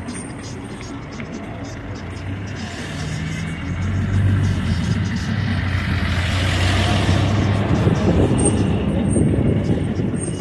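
A minibus engine running as the vehicle passes close by, growing louder from about three seconds in, with its noise peaking about two-thirds of the way through.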